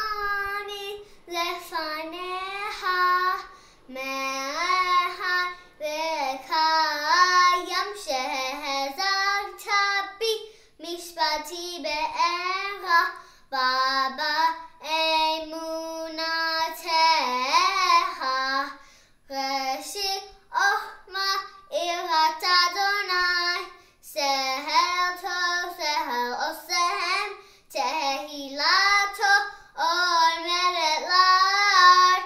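A young girl singing unaccompanied, in short melodic phrases with brief pauses between them.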